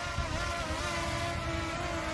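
DJI Mini 2 drone hovering close by, its four small propellers and motors giving a steady buzzing whine of several stacked tones that waver slightly, over a low rumble of wind on the microphone.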